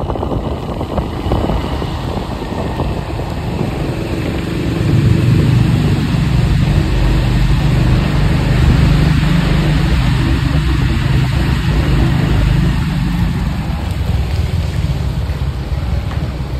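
A car driving on a wet road, with steady tyre and engine rumble. The rumble swells louder for several seconds while the car passes through a rock tunnel, then eases as it comes back out.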